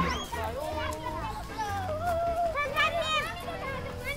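Young children chattering and calling out to each other as a group, several high voices overlapping.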